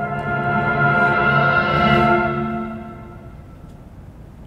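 Symphony orchestra playing a held chord across strings and winds that swells to a peak about two seconds in, then dies away to a much quieter sound.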